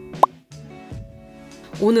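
A single short, loud pop that sweeps quickly upward in pitch about a quarter second in, followed by soft background music with steady held tones.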